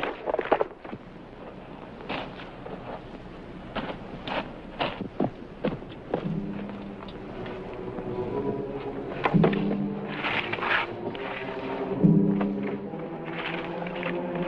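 A sudden thunk at the start as an arrow strikes a pine trunk, then scattered knocks and thuds. From about six seconds in, dramatic orchestral film music plays low, sustained chords that swell about every three seconds.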